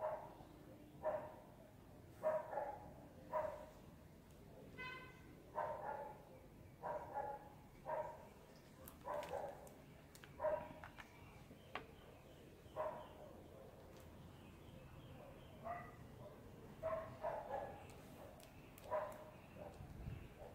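A dog barking over and over in short barks, mostly a second or so apart, with a lull past the middle and one higher yelp about five seconds in.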